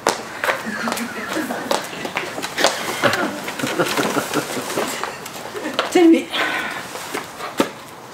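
Footsteps on a hard floor, then knocking and rustling as a handbag is searched for a notebook: a string of short, irregular clicks and knocks.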